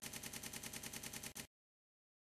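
Faint electronic logo sound effect: a rapid, even pulsing of about fifteen pulses a second that cuts off suddenly about a second and a half in, leaving dead silence.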